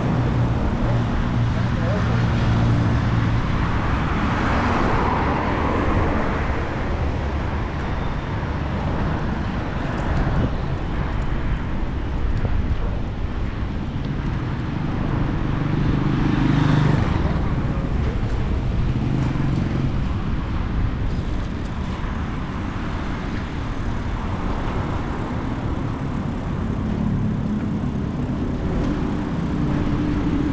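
City street traffic heard from a moving bicycle: car engines and road noise, steady in level.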